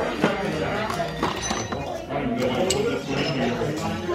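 Metal lightsaber hilt parts clinking as they are picked from a parts tray and handled, a few short clinks over background chatter.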